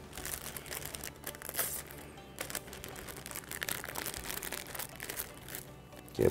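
Clear OPP plastic film bags crinkling and rustling in short irregular bursts as they are handled and sealed, over quiet background music.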